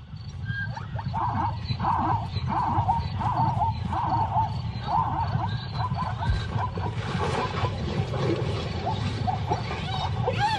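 Spotted hyenas attacking a zebra at night: a run of short, repeated high calls, about two a second, over a steady low rumble, with calls sweeping up in pitch near the end.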